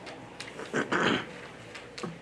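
A single loud cough about a second in, lasting about half a second, picked up by the chamber's microphones.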